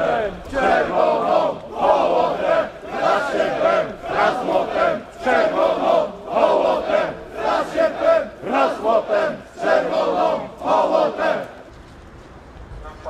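A crowd of marchers chanting in unison, with short shouted phrases repeated about once a second, which stop shortly before the end.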